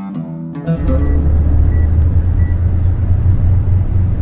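Acoustic guitar music briefly, then, under a second in, a steady low rumble of a car driving at speed, heard from inside the cabin: engine and tyre noise.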